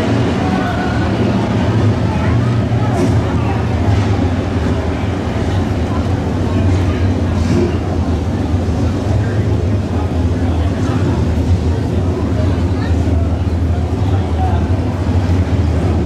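A field of hobby stock race cars rolls around the dirt track at slow pace speed before a restart, engines giving a steady low rumble.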